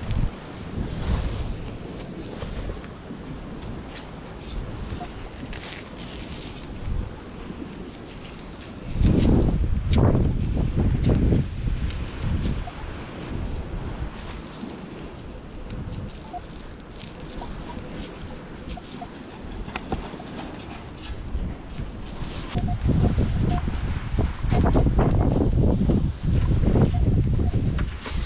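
Wind buffeting the microphone, a rough, unpitched rumble that swells into heavy gusts about nine seconds in and again over the last five seconds.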